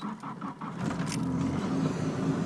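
Nissan 240SX's turbocharged SR20DET engine running. Its sound grows louder about a second in and then holds steady, with a few light clicks in the first second.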